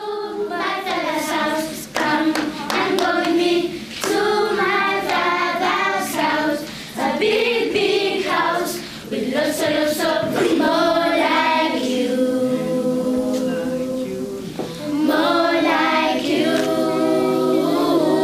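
Children's choir singing, with hand claps keeping time through the first half. Around twelve seconds in, the voices hold longer notes before picking up again.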